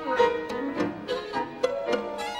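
Violin with piano accompaniment, playing a passage of distinct, separately attacked notes.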